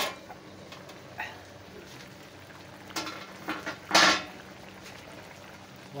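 Metal lid lifted off a wok of chicken adobo simmering in its sauce, with a steady low bubbling underneath. There are a few light knocks, then one loud, short metal clank about four seconds in.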